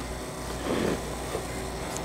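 A plastic-wrapped tube of crackers being handled and drawn out of a cardboard box, faint soft rustling about two-thirds of a second in, over a steady low hum.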